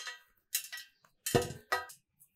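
Hammered stainless-steel plate clanking and ringing briefly as dough is pressed and kneaded on it, about three separate knocks.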